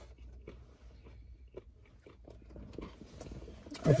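Faint chewing and soft crunching of someone eating take-out food, with scattered small clicks, over a low steady hum inside a car.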